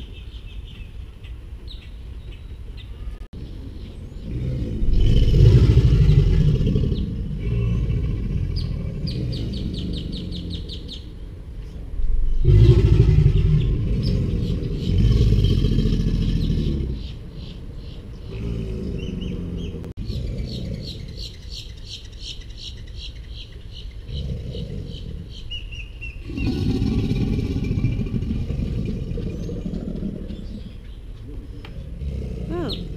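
American alligators bellowing in breeding season: several deep bellows of a few seconds each, the strongest about five seconds in and about twelve seconds in, with more near the end. Between the bellows, birds give rapid repeated chattering calls.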